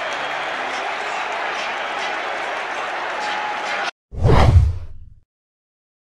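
Football stadium crowd noise, steady, which cuts off abruptly about four seconds in. A loud whoosh transition effect follows, sweeping from high down into a low rumble and fading within about a second, then silence.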